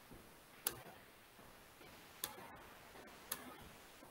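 Three faint, sharp computer mouse clicks at uneven spacing over quiet room tone.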